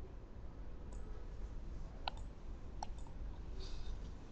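Computer mouse clicks: three sharp, separate clicks about a second apart, then a fainter one near the end, over a low steady hum.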